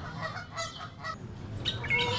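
Geese honking faintly: several short calls over a low steady hum.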